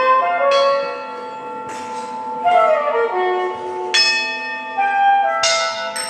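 Hand-cast bronze bells hanging from a rack, struck with mallets about four times, each strike ringing on with many overtones. Underneath, a pitched melodic line falls in pitch around the middle.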